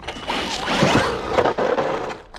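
Traxxas Maxx RC monster truck driving fast past at close range: electric motor whine with tyres churning through wet slush. It is loud for about two seconds, then falls away as the truck goes off.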